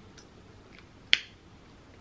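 A single sharp snap about a second in, with a few faint ticks of wrapper handling before it, over quiet room tone.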